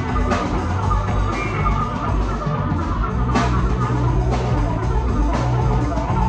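A live rock band playing an instrumental passage: electric guitar, fretless bass holding long low notes, and a drum kit with strong hits about once a second.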